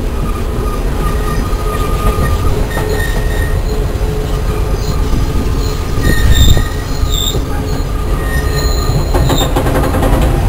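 Train in motion heard from on board: a steady, loud low rumble of steel wheels on the rails, with thin high wheel squeals coming and going. Near the end comes a quick run of clicks as the wheels pass over rail joints.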